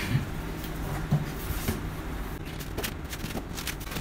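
A white cardboard laptop box being opened and its contents handled: irregular rustling with light clicks and scrapes, busiest in the second half.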